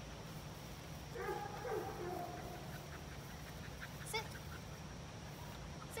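A young flat-coated retriever whining: one drawn-out, wavering whine that falls in pitch, starting about a second in.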